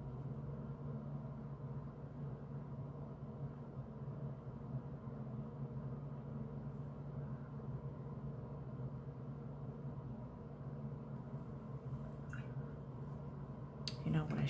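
Quiet room tone: a steady low hum, with one faint tick about twelve seconds in.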